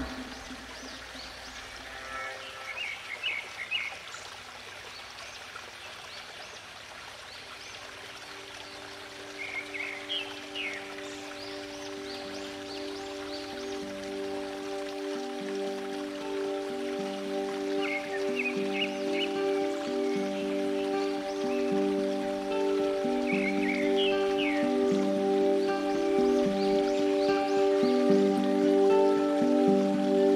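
Running water with a few short bird chirps, and a slow, soft instrumental tune of long held notes fading in after several seconds and growing steadily louder.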